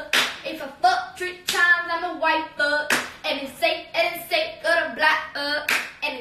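A voice singing in held, changing notes, with sharp claps about every one and a half seconds.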